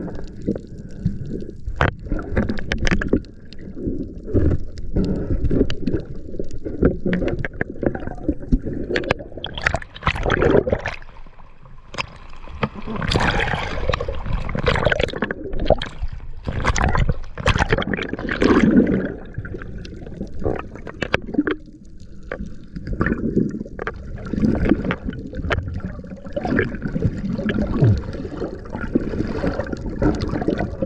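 Water gurgling and sloshing around a spearfisher's camera as he swims at night, in uneven surges. It gets rougher around the middle, with a churning splash as the water around the camera is stirred up.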